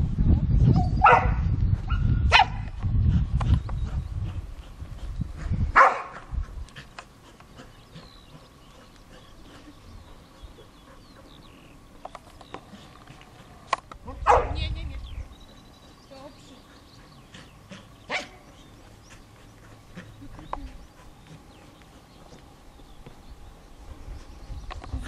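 A dog barking now and then, single short sharp barks a few seconds apart, the loudest about six and fourteen seconds in.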